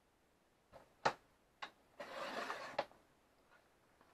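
Sliding paper trimmer cutting a strip off a sheet of scrapbook paper: a few sharp clicks, then the blade drawn along its rail through the paper for a little under a second, ending with a click.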